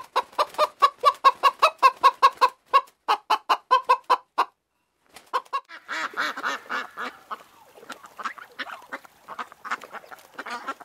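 Chickens clucking in a quick, even run of short calls, about five a second, that stops about four and a half seconds in. After a brief pause, a duck quacks in a quieter, busier run of calls.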